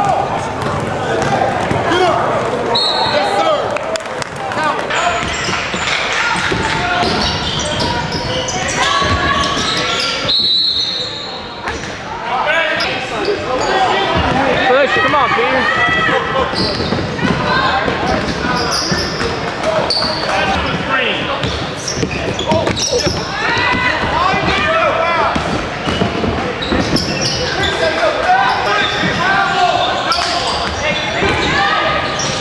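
Live basketball game sound in a gymnasium: a ball bouncing on the court among many short knocks, with indistinct shouts from players and onlookers, all echoing in the hall.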